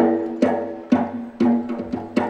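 Malay inang dance music from a live band, starting up again after a brief pause. It has an even beat of sharp percussive strikes, about two a second, each with a short pitched ring.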